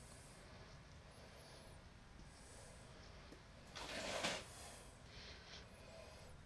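Faint room tone with one short, noisy breath out through the nose of the person filming, about four seconds in.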